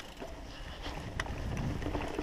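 Mountain bike riding down a dirt forest trail: steady tyre rumble and wind buffeting the camera microphone, with scattered clicks and rattles from the bike, one sharper click about a second in.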